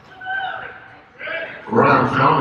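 Basketball sneakers squeaking on the hardwood court, twice, in short high-pitched squeaks. Loud voices break out near the end.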